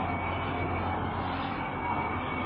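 Steady background hum and hiss with a faint high whine, and no clear events.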